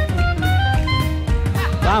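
Upbeat jingle backing track with drums and bass under a melody of short, separate notes, playing between sung lines. A man calls out 'Vamos' near the end.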